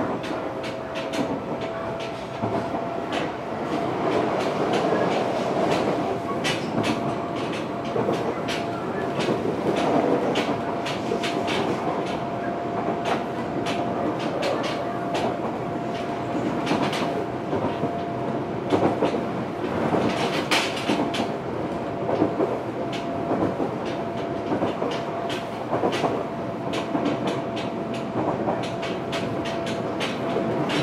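Fukuoka City Subway 1000N-series train running at steady speed, heard inside the carriage: a continuous running rumble with a steady whine, and frequent clicks of the wheels passing over rail joints.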